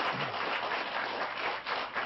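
Studio audience laughing and applauding, a dense steady patter of clapping.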